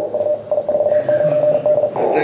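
Amateur HF transceiver receive audio, muffled and narrow-band, with a steady single tone running through the noise for most of the stretch.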